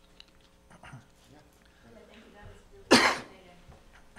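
A single loud cough close to the microphone about three seconds in, sharp at the start and dying away quickly, over faint rustling room noise.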